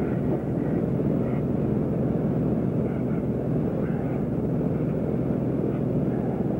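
Aircraft engine running steadily, heard from inside the cockpit of the small plane carrying the camera.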